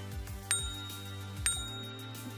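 Bicycle bell ringing twice, about a second apart, each ring sharp and then fading, over background music.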